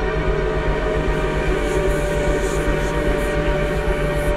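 Deathcore recording in a dense, loud instrumental passage: a wall of heavy distorted sound with a held, droning pitch and fast, even pulsing in the low end.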